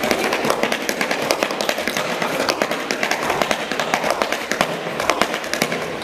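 Many tap shoes striking wooden tap boards and the floor at once, a fast, dense clatter of overlapping metal taps from a group of dancers.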